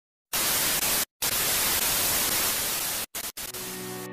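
Loud static hiss, like an untuned TV, used as a transition sound effect; it cuts out briefly about a second in and twice more near three seconds, then gives way to music near the end.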